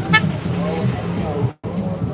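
A brief, high-pitched vehicle horn toot just after the start, over a steady low hum of traffic and engines. Faint voices are heard, and the audio cuts out for an instant near the end.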